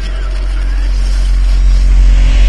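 A deep rumble with a steady low hum, swelling steadily louder, as an outro sound effect after the song.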